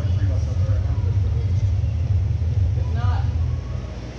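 Large-room ambience: a steady low rumble with faint distant voices, the rumble easing off slightly near the end.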